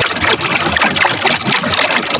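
Loud, heavily distorted audio from an editing effect: the credits music is crushed into a dense, harsh noise with no clear tune.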